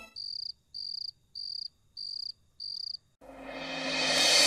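Cricket chirping: five short, high chirps, evenly spaced about two a second, that stop suddenly. A rising cymbal swell starts near the end.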